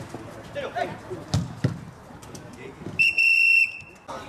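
Referee's whistle blown in one long, steady blast about three seconds in, the loudest sound here, signalling a stop in play in a futsal match. Before it, a few sharp thuds of the ball being kicked and players' shouts.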